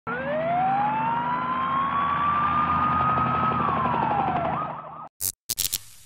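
An emergency-vehicle siren wailing over a low background rumble, its pitch rising slowly, holding, then dropping. The sound cuts off abruptly at about five seconds, followed by a quick run of about four sharp bangs.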